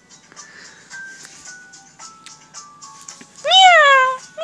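A cat meows once near the end, a loud call that rises and then falls in pitch. Before it there is faint background music, a few thin notes, and small clicks.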